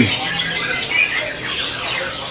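Many caged songbirds chirping and calling at once: a dense chatter of short, high, overlapping chirps.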